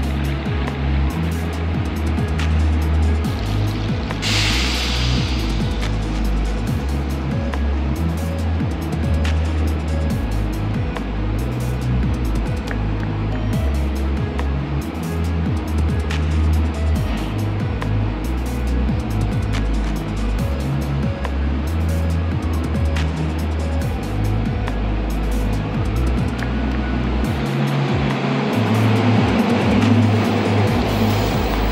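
Background music with a stepped bass line dominates. Under it an electric commuter train rolls in, growing louder over the last few seconds as its cars pass close by.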